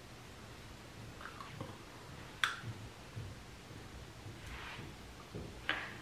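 Quiet, faint clicks and soft squishes of a clear plastic whitening tray being pressed onto the upper teeth with the fingertips, with one sharper click about two and a half seconds in and another near the end.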